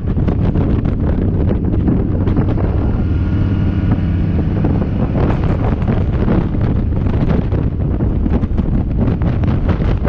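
Motorcycle engine running steadily under way, with heavy wind noise on the microphone.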